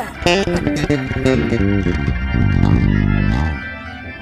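Six-string electric bass guitar played with the fingers: a quick run of plucked notes, then longer held notes that fade near the end.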